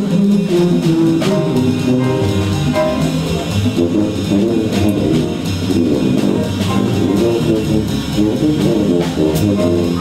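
Jazz big band playing a full ensemble passage, with a saxophone section and a tuba among the horns, the parts moving mostly in the low-middle range.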